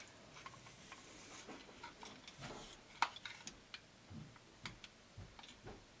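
Faint handling sounds of a curling iron being worked through hair: scattered small clicks and soft rustling, with the sharpest click about three seconds in.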